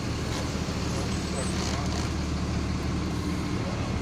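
Steady low drone of a Bharat Benz sleeper bus's engine and road noise, heard from inside the cabin.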